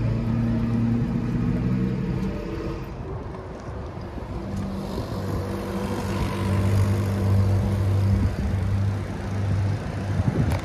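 Street traffic: a motor vehicle's engine running close by with a steady low hum. It fades for a couple of seconds and comes back louder in the second half.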